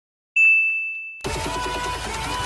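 A single bright electronic ding that rings and fades, then electronic music cuts in abruptly just over a second in: an animated intro's sound effect and jingle.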